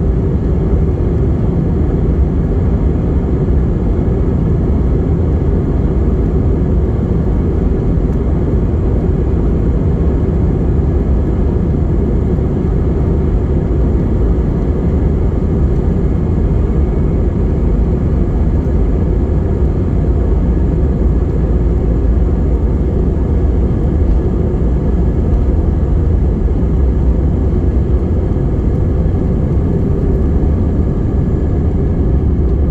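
Inside the cabin of an Airbus A319-111 during the takeoff roll: its CFM56 engines at takeoff thrust and the runway rumble make a steady, loud, deep rumble.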